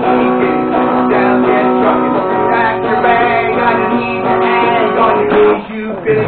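Guitar music with strummed chords and held notes.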